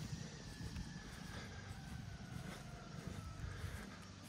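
Faint distant engine noise: a low rumble with a faint whine that falls slowly in pitch.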